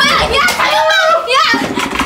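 People shouting and yelling excitedly, loud high voices rising and falling sharply in pitch.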